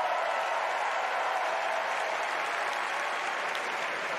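Large convention-hall crowd applauding, a steady wash of clapping that eases slightly near the end.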